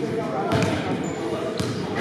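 Basketballs bouncing on a wooden gym floor, two sharp thuds about a second apart, over the chatter of players' voices in a large gym.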